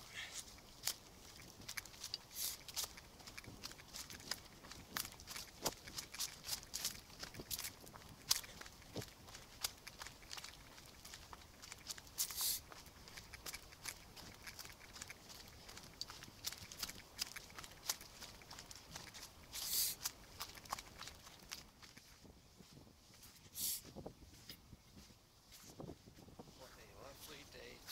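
Footsteps through dry fallen leaves on a woodland trail: a long, irregular run of light crunching and rustling steps, with a few longer brushing rustles.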